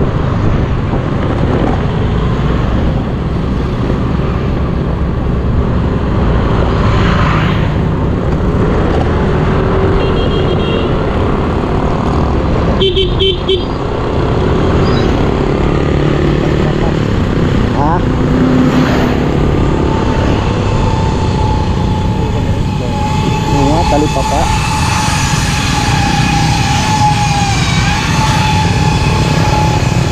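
Motorcycle ride through traffic: steady engine and road noise with wind on the microphone. A short horn beep comes about a third of the way in, and a steady high tone holds through the last third.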